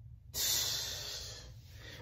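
A man's long breath out close to the microphone: a hissing exhale that starts suddenly and fades away over about a second and a half.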